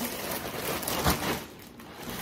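Thin plastic bag crinkling and rustling as it is handled, with a sharper crackle about a second in.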